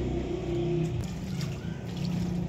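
A motor running with a steady low hum.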